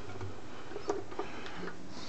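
Light clicks of a small screw and the sheet-metal cover being handled, a couple of faint ticks about a second in, over a steady low hum.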